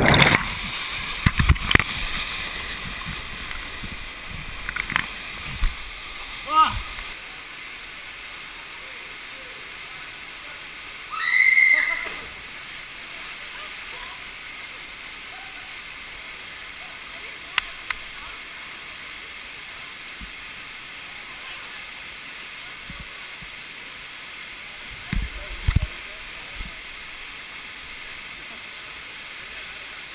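Water churning and bubbling as a jumper plunges into the pool below a waterfall, loud at first and fading over the first few seconds into the steady rush of the waterfall. A brief high-pitched cry rings out about 11 seconds in.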